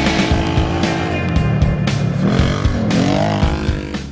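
Can-Am Commander side-by-side's V-twin engine revving, its pitch dipping and climbing again about three seconds in, mixed under loud rock music with a steady beat.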